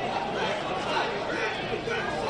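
Football stadium crowd ambience: a steady murmur of spectators with faint, indistinct voices.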